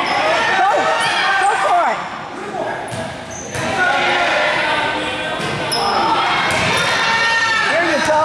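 A basketball bouncing on a hardwood gym floor amid sneaker squeaks and children's voices calling out, all echoing in a large hall.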